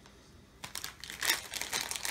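A clear plastic scent-pack pouch of scented beads crinkling in the hands, in a run of short rustles that start about half a second in.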